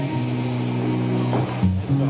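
Live pop band playing an instrumental passage without vocals: held chords over bass guitar, moving to a new chord about one and a half seconds in.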